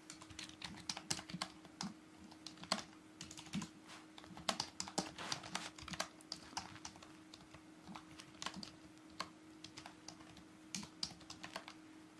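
Typing on a computer keyboard: quick, irregular keystroke clicks, fairly faint, over a faint steady hum.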